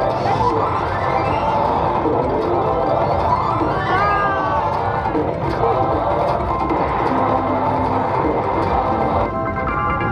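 Video slot machine in its free-spin bonus: bonus music with rising sweeps as the reels spin, over casino-floor chatter. Just before the end it changes to a run of bright, steady chime tones as a win lands.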